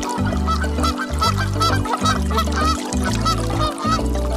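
Duck quacks, short and repeated rapidly at about five a second, over children's-song backing music with a steady bass line.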